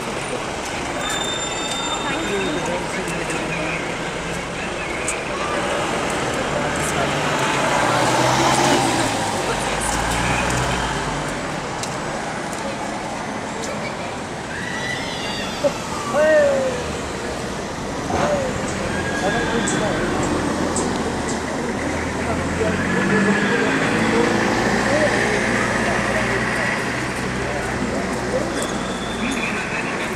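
Street traffic: vehicles passing with engines running, one louder low rumble about a third of the way in, with voices of people in the street mixed in.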